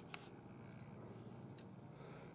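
Near silence: faint room tone, with one brief click just after the start.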